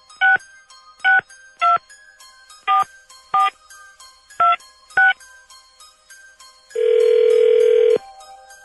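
Telephone touch-tone dialing: seven short two-note keypad beeps as a number is dialed, over a light, rhythmic background music bed. Near the end a steady tone comes on the line as the call starts to ring.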